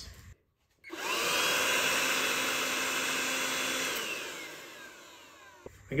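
ALLOYMAN 20 V cordless blower/vacuum motor and fan spinning up with a rising whine, running steadily for about three seconds, then winding down with a falling whine after release, followed by a small click.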